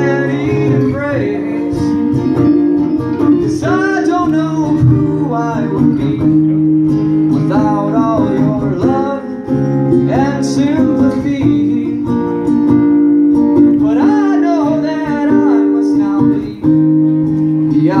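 Live band playing: acoustic and electric guitars holding chords, with a bending vocal melody over them that comes in phrases every few seconds.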